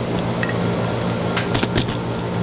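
Steady low mechanical hum of running lab equipment, with a few light clicks about a second and a half in.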